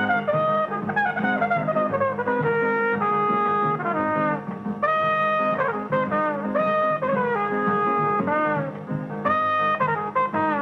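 Jazz trumpet playing a melodic solo over a small band: a long falling run in the first couple of seconds, then held notes with bends and slides.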